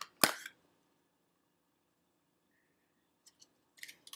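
A single sharp plastic snap a quarter second in, as a wax bar's plastic clamshell package is popped open, followed near the end by a few faint small clicks of the plastic being handled.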